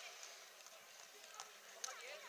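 Faint open-air ambience of a children's football match: distant, indistinct voices of young players with a few light knocks, one sharper knock near the end.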